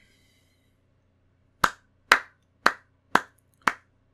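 One person's hands making sharp, evenly spaced strikes in appreciation, five of them at about two a second, beginning a little before halfway in.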